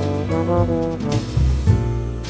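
Big-band jazz: brass section with trombones playing pitched lines, some notes bending, over a bass line and cymbal strokes.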